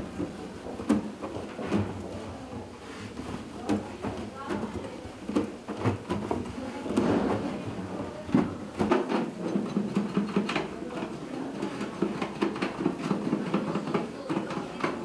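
People talking indistinctly, with scattered light taps and knocks.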